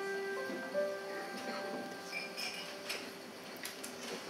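Keyboard notes held and slowly dying away: a chord struck just before, then a couple of single notes in the first second, ringing on under the rest. Several light clicks and taps follow in the second half.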